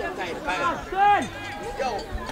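Several people's voices talking and calling out over one another, with one loud, raised call about a second in.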